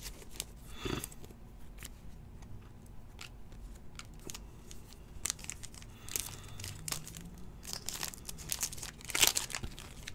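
Plastic trading-card pack wrapper crinkling and tearing in the hands, with cards scraping and clicking against each other. There are many short crackles, the loudest burst near the end.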